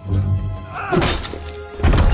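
Two heavy wooden thunks over music, one about a second in and a louder, deeper one near the end, with a falling creak just before the first. This fits a wooden cellar door being hauled open.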